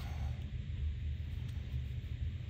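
Steady low background rumble with a faint hiss, with no distinct clicks or knocks.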